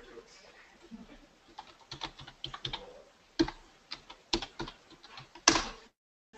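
Typing on a computer keyboard: a run of separate key clicks starting about a second and a half in, with one louder keystroke near the end.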